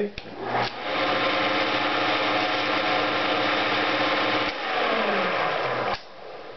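Homemade V-drum sander's quarter-horsepower furnace motor is switched on and spins the MDF-disc drum up to speed through a link belt within about a second, then runs with a steady whir. A few seconds in it is switched off, and its pitch falls as the drum coasts down.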